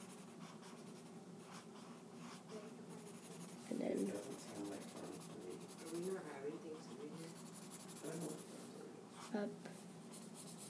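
A paper blending stump rubbed over graphite on sketchbook paper: a dry, scratchy scraping in quick runs of back-and-forth strokes as the apple's shading is smoothed. Faint, indistinct speech comes in a few seconds in.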